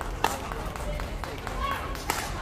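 Badminton rackets striking a shuttlecock during a rally: sharp hits, the loudest about a quarter of a second in, ringing in a large sports hall, with voices in the background.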